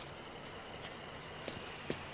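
Quiet steady background hum with two faint short clicks about a second and a half in and just before the end.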